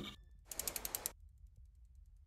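Logo-animation sound effect: a short, quick run of mechanical clicks starting about half a second in and lasting about half a second, then near silence.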